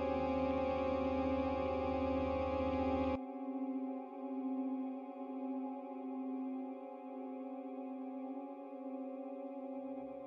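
Ambient music generated by the Cinescapes Pro engine in Kontakt: held synthesizer pad chords. A deep bass layer cuts off suddenly about three seconds in, leaving the sustained pad tones.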